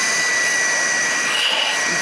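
Electric secondary air injection pump running steadily with its outlet line unplugged: rushing air with a steady high whine as the pump's pressure releases through the open line. It is a sign that the diverter solenoid valve is stuck shut and blocking all flow with the line connected.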